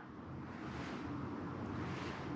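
Quiet, steady background hum and hiss, room tone with no distinct event.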